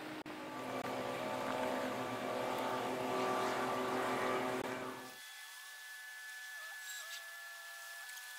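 Diesel engine of a beam trawler running: a steady hum of several tones that grows louder over the first few seconds. About five seconds in, the deeper part cuts out suddenly, leaving a thinner, higher hum.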